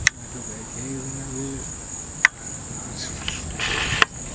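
Steady high-pitched chorus of insects chirring without a break, with two sharp clicks, a short low hummed voice about a second in, and a brief rustle near the end.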